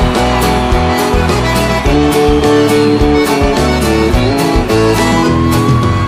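Sertanejo band playing an instrumental passage with no singing: sustained accordion chords over guitar and a steady drum beat.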